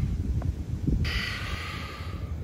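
Low wind noise on the microphone, with a soft hiss lasting about a second from halfway in.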